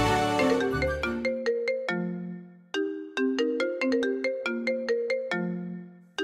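A mobile phone ringtone: a short melody of bright, quickly fading notes that stops abruptly just under three seconds in and starts over from the top. Background score music fades out over the first second or so.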